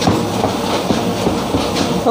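A two-colour offset printing machine for non-woven bags running with a loud, steady mechanical clatter.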